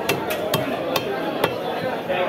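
Sharp chopping knocks from small carp being cut through on a fixed boti blade, five of them in about a second and a half at uneven spacing. Voices murmur underneath.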